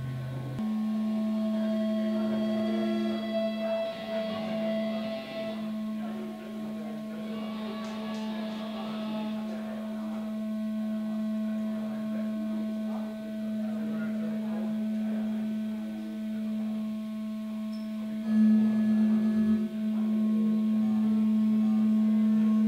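A sustained amplified electric-guitar drone held on one low note, with fainter steady tones above it. It steps up from a lower note just after the start and swells briefly about eighteen seconds in.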